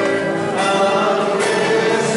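A group of voices singing a slow worship song, with long, held notes.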